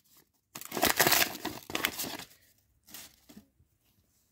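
Card-pack packaging crinkling and tearing as a hockey card pack is worked open by hand: a dense crackling burst starting about half a second in and lasting nearly two seconds, then a few faint clicks.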